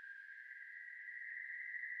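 Faint background track under the narration: a single steady high-pitched tone that slowly grows louder.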